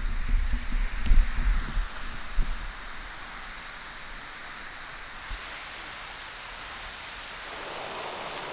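Steady rushing hiss of the water jet of Andrew's Geyser, a man-made fountain, its spray falling back into the basin. Low rumbling thumps on the microphone during the first two and a half seconds.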